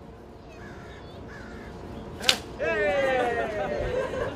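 Giant ceremonial scissors snap shut through a ribbon with one sharp crack just past halfway. At once comes loud, drawn-out cheering and whooping.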